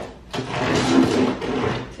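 Large cardboard shipping box being worked open at the top, a rough scraping and rustling of cardboard that sets in suddenly about a third of a second in.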